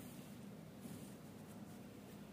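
Faint scratching of a pen on paper as a line is drawn.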